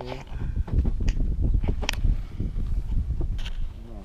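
Uneven low rumble of wind buffeting the microphone, with a few sharp clicks and brief fragments of a voice near the start and end.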